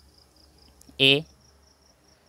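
Faint, steady high-pitched pulsing trill of an insect in the background, over a low hum, with one short spoken syllable about a second in.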